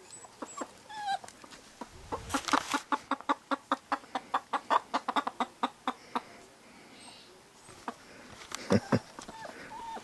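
Domestic hen clucking in a fast, even run of about five clucks a second for several seconds, with a few short higher calls before it and two louder clucks near the end. It is alarm clucking at a new puppy that the chickens take for a threat.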